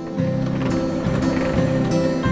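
Large corrugated-steel sliding barn door being pushed open along its overhead track, a low mechanical rumble from the rollers, with acoustic guitar music underneath.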